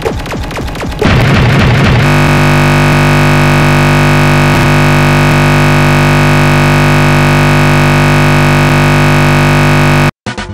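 Music from a video playing in a crashing Windows 7 virtual machine breaks up about a second in into a loud glitchy burst. From about two seconds on, a loud, unchanging buzzing drone holds: the audio buffer stuck looping as the system halts on a blue screen of death.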